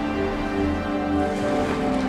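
Music with slow, sustained notes.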